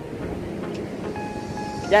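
Steady rushing of strong wind on the phone microphone, mixed with surf breaking on the beach.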